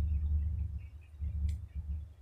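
A low, steady hum with one short click about one and a half seconds in.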